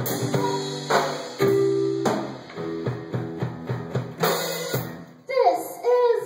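Live band music: an acoustic guitar strummed over a drum kit in a passage without vocals, with regular drum strokes and held chords. A woman's singing comes back in just before the end, after a brief dip in level.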